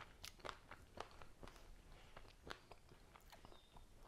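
Faint, irregular crunching and small mouth clicks of someone chewing a bite of a frozen Twix ice cream bar. The caramel in it has set hard and crunchy, with cookie pieces.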